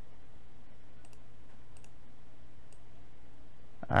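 A few faint computer mouse clicks spread across a few seconds, made while picking items from a right-click menu, over a steady low electrical hum.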